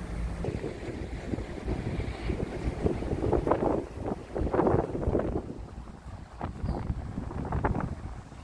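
Wind buffeting a phone microphone at the water's edge: an uneven, gusty rumble that surges strongest a few seconds in and again near the end.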